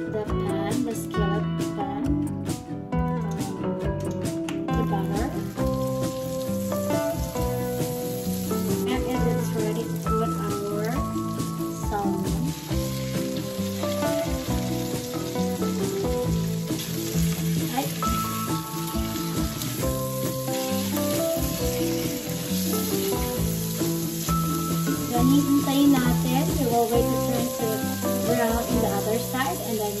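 Salmon fillets frying in hot oil in a cast-iron skillet: a steady sizzle that starts about five seconds in, as the fish goes into the pan. Background music plays over it.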